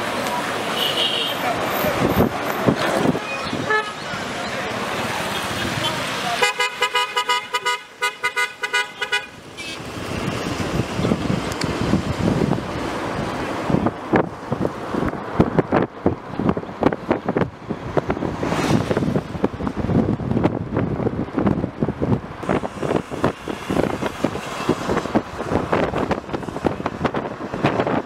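A vehicle horn sounding a rapid run of short toots for about three seconds, a few seconds in, over the noise of cars driving in convoy.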